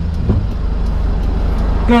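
Engine of a manual Hyundai light truck idling steadily in neutral, heard as a low hum from inside the cab.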